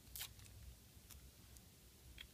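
Near silence, with one brief soft rustle about a quarter second in and a faint tick a little after the middle: small hand-handling noises while a Band-Aid is put over the catheter site.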